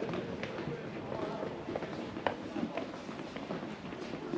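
Indistinct talk from a small group of people, with a few sharp footsteps on stadium steps; one sharp click a little past halfway is the loudest sound.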